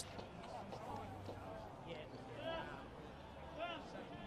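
Faint outdoor ambience picked up by the field microphones at a football oval, with two brief distant calls, one about halfway through and one near the end.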